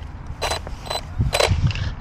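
Two short mechanical whirs about a second apart from a crash-damaged Traxxas Sledge RC truck, its motor and drivetrain briefly run while the truck is checked to see whether it still works.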